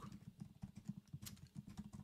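Computer keyboard typing: a fast, faint run of key clicks.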